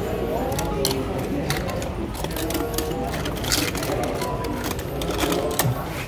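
Loose die-cast toy cars clicking and clinking against each other as a hand rummages through a cardboard box full of them: many sharp, irregular clicks over background chatter.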